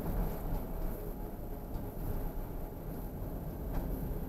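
Steady low rumble of a car on the move, road and engine noise heard from inside the cabin, with a thin steady high whine over it.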